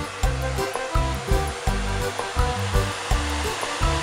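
Handheld electric hair dryer running, a steady blowing rush, with background music with a regular beat playing over it.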